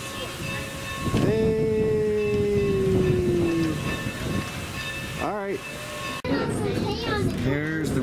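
Steam locomotive whistle blowing one long note of about two and a half seconds, its pitch sagging slightly as it goes. Voices follow near the end.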